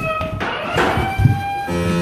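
Electronic tones from a game room's sound system: long held tones that sink slightly in pitch, a thump about a second and a quarter in, then a low buzz near the end, the room's signal that a player has stepped into a light beam.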